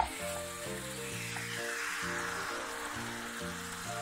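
Diced onions and jjajang sauce, thinned with a little water, sizzling and bubbling in a frying pan, with background music playing a run of steady notes.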